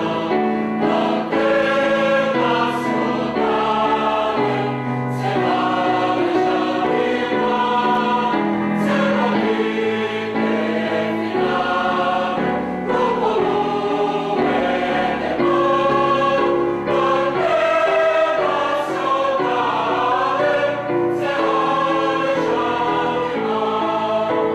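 A mixed choir of women's and men's voices singing a piece in several parts, with held chords that change from note to note and no break.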